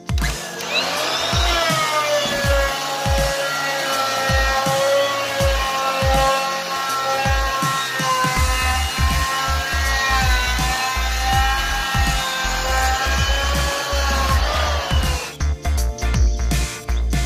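Porter Cable 126 planer's motor spinning up with a rising whine about half a second in, running steadily as it cuts along the edge of a board, then winding down with a falling whine near the end. Electronic music with a steady bass beat plays throughout.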